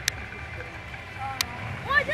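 Low steady rumble of a drag car's engine idling at the starting line, with two sharp clicks about a second and a half apart.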